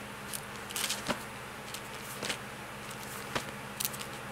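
Bible pages being leafed through: several brief, soft rustles spread across a few seconds, over a low steady hum.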